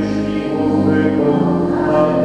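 A group of voices singing a hymn together in held, sustained notes.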